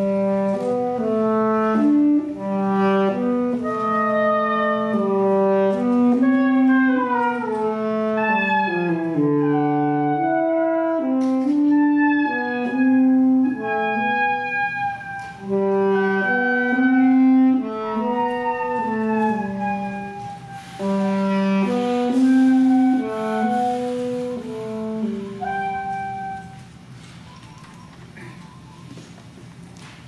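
Saxophone quartet playing in harmony, several voices moving together in chords. The music ends about 27 seconds in.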